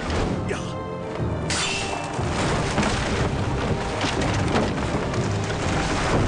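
Dramatic film score under the sound effects of a fight scene: a steady run of hits, crashes and deep booms.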